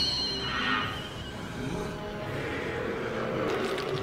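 Soundtrack of a tokusatsu TV episode: a high ringing energy-beam sound effect that fades away within the first second, over background music.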